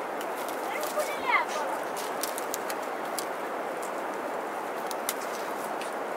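Hands plaiting long green plant strips on the ground: scattered light clicks and rustles over a steady hiss. A short rising-and-falling call comes about a second in.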